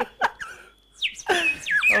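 A small hand-held toy whistle blown in quick, bird-like chirps that slide down in pitch, starting about halfway through, after a laugh trails off.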